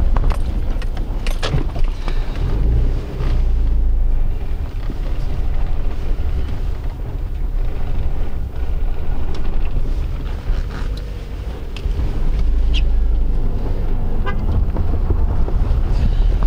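Low rumble of a car's engine and tyres heard from inside the moving car, with a few scattered knocks and rattles.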